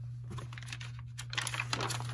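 Sheets of paper and cardstock being handled and slid over one another, with light rustles that grow busier in the second half. A steady low hum runs underneath.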